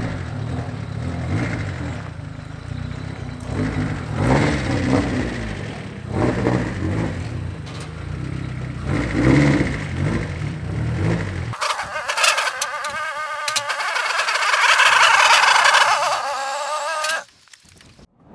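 A Nissan S15's turbocharged Honda K24 four-cylinder running at low speed with a few short throttle blips as the car moves off. About eleven seconds in the sound switches abruptly to a louder, higher wavering sound without the engine's low rumble, which breaks off just before the end.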